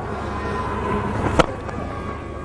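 Cricket bat striking a ball: a single sharp crack about one and a half seconds in, over steady stadium crowd noise.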